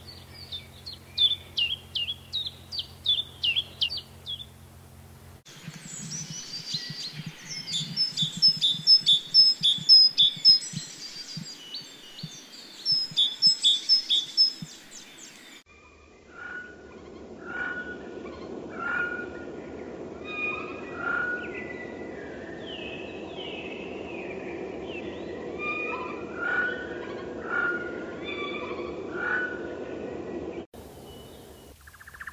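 Three bird recordings in turn. First a common chiffchaff sings simple repeated notes at a steady pace of about two or three a second. About five seconds in, a great tit sings loud runs of rapid repeated phrases, and from about halfway a Eurasian jay gives calls roughly a second apart over steady background noise.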